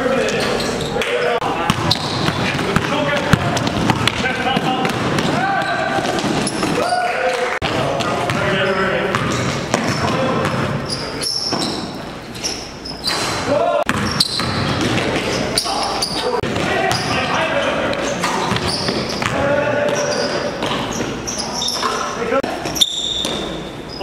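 Basketball game sounds in a gymnasium: a ball bouncing on the hardwood court amid indistinct shouts and calls from players, with sharp knocks scattered throughout.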